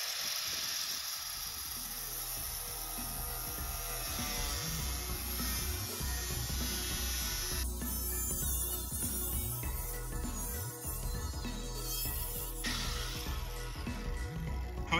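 Background music with a steady bass beat, over the high hiss of a Milwaukee angle grinder's cut-off wheel slicing into a car trunk lid. The hiss changes abruptly about halfway through and again near the end.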